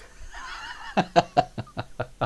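A man laughing: a breathy start, then a run of short chuckles, about five a second.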